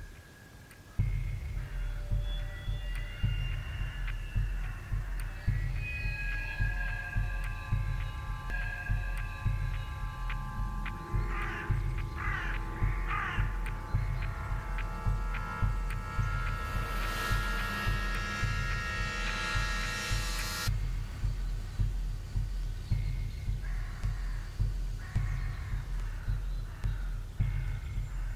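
Suspense film score: a steady low repeating pulse under sustained held tones, with a high hissing swell late on that cuts off suddenly. A crow caws about three times around halfway through.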